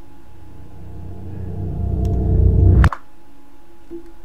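Horror-film sound design: a deep rumble swells louder over about two seconds and cuts off abruptly with a sharp crack a little before three seconds in, over a faint steady drone.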